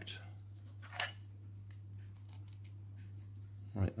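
Metal bicycle-spoke pivot pin and a 3D-printed plastic leg handled together as the pin is pushed through the pivot hole: one sharp click about a second in, then a few faint ticks, over a steady low hum.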